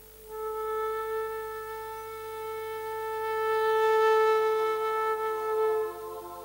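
Concert flute holding one long, slow note of a hymn-like melody for about five and a half seconds, swelling in the middle and easing off near the end.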